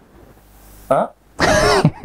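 A man clears his throat: a short sound about a second in, then a louder, half-second throat-clear.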